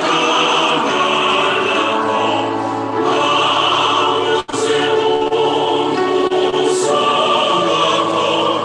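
A choir singing sustained, held chords. The sound cuts out for an instant about halfway through.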